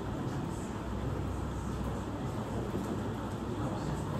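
Steady low rumble of room noise with no distinct events.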